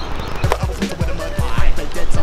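Hip hop background music with a beat of deep, punchy bass kicks.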